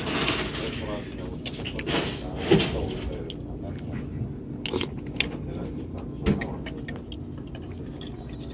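Restaurant dining-room background of voices, with a few sharp clinks of tableware, the strongest about five seconds in and again a little after six seconds.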